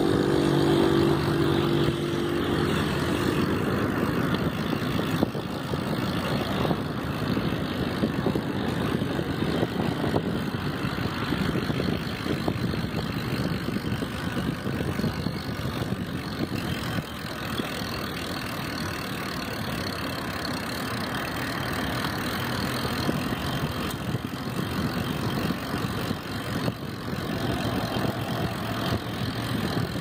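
Wind rushing over the microphone and tyre noise from a bicycle riding along an asphalt bike path, steady throughout. A low droning tone is heard in the first three seconds.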